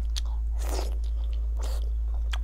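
Biting into and chewing a chunk of fatty pork, with a short click early on, a longer noisy bite sound around the middle and another near the end, over a steady low hum.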